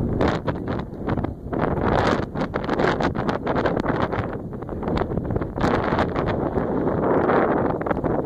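Wind buffeting the camera's microphone in uneven gusts, with crackling rumble that swells about two seconds in and again in the second half.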